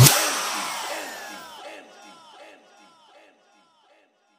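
The tail of an electronic DJ competition mix. The bass and beat cut off, and the last sound repeats as a fading echo, each repeat a short falling glide, about four a second, dying away within about two and a half seconds.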